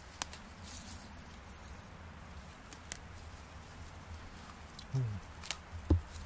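Hands picking wood sorrel leaves from the forest floor: quiet rustles and a few sharp ticks, over a low steady rumble.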